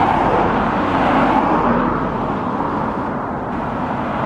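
Cars passing close by on dry pavement: a steady rush of tyre and road noise that eases a little in the middle and builds again as the next car approaches near the end.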